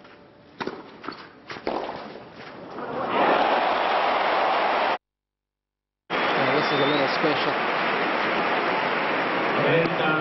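Tennis racquet strikes on a clay court over a fairly quiet stadium crowd, then loud, steady crowd noise from about three seconds in. The sound cuts out completely for about a second in the middle, then the crowd noise comes back.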